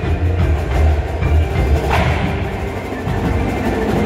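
Indoor percussion front ensemble playing: percussion racks with drums and cymbals, mallet keyboards and a heavy, sustained electronic bass, with a sharp accent about two seconds in.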